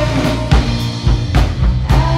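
Live rock band playing: an electric guitar's sustained chords over a drum kit, with kick and snare hits about twice a second.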